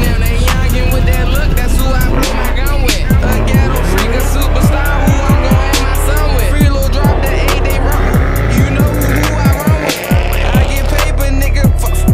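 A hip-hop beat with heavy bass plays over a Jeep Grand Cherokee SRT's engine and squealing tyres as it does a burnout in the water box.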